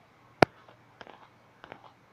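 One sharp, short click about half a second in, followed by a few fainter clicks and taps over low steady background noise.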